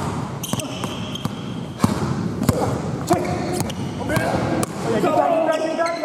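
Basketball being dribbled on a hardwood gym floor: a string of sharp bounces at irregular spacing, with voices in the background.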